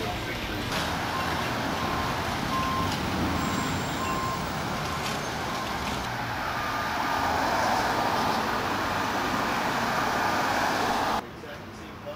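City street traffic noise, a steady wash of passing cars, with a faint short beep repeating every half second or so for the first few seconds. The sound drops suddenly to a quieter background about a second before the end.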